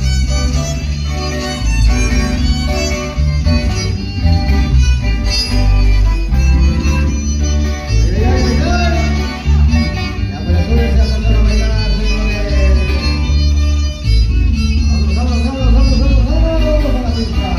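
Live string band playing: a violin carries the melody over acoustic guitars and an electric bass.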